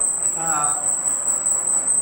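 Continuous high-pitched trill of crickets, steady and unbroken, with a brief fragment of a man's voice about half a second in.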